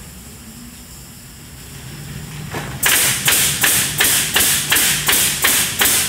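Pneumatic nail guns on an automated fence-nailing bridge firing one after another, about three sharp shots a second, starting a little under three seconds in. The nails go in at programmed positions as the gantry travels over the boards. A low steady hum sits under the shots.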